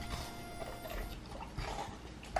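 Dog eating watermelon out of the rind: wet chewing and crunching bites, most of them in the second half.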